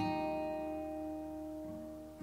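Background music: a guitar chord struck and left to ring, slowly fading, with another note coming in near the end.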